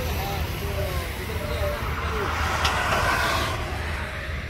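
Steady low outdoor rumble with faint voices talking in the background; about two and a half seconds in the noise swells briefly, with a short click.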